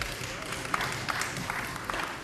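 Light audience applause: many separate hand claps over a steady hiss.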